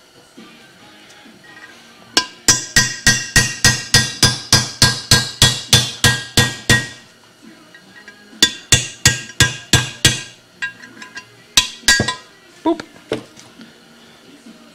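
Hammer blows on a chisel driven against the old extension housing bushing in a C4 transmission tail shaft housing, each blow a sharp metallic strike with a ringing tone. There is a fast run of about four blows a second lasting nearly five seconds, a short pause, a second shorter run, then a few last lighter taps. The chisel is cutting through the pre-grooved bushing to break its tension so that it can be slid out.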